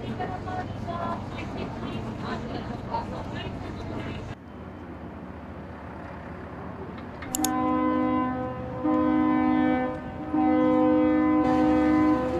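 Low engine rumble with faint voices. After a cut, a ship's horn sounds three blasts on two close low notes, the third the longest and loudest.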